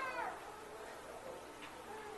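A brief high-pitched cry, rising then falling in pitch, right at the start, from a small child in the congregation.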